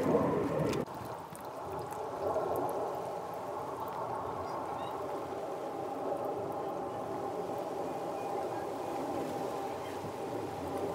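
Water splashing and dripping as wet cotton clothes are lifted out of a plastic basin and wrung by hand, loudest in the first second, then a quieter, steady trickle.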